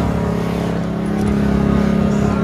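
Motor vehicle engine idling close by, a steady hum.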